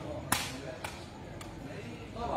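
Woven sepak takraw ball struck by players' feet in a rally: three sharp smacks about half a second apart, the first the loudest.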